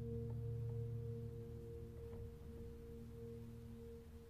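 Faint meditative background music: a low, held ringing chord slowly fading away.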